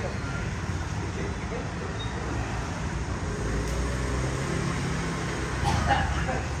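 Street ambience: a steady low rumble of motorbike and street traffic, with voices in the background. A voice is briefly louder near the end.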